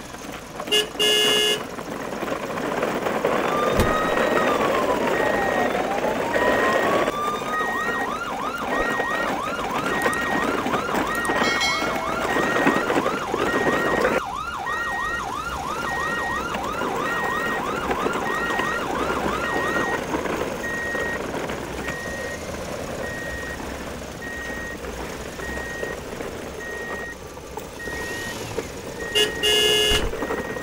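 Electronic siren: a slow wail that rises and falls, then a fast yelp sweeping about three times a second until around twenty seconds in, with a short beep repeating a little more than once a second through most of it. A short loud horn-like blast sounds about a second in and again near the end.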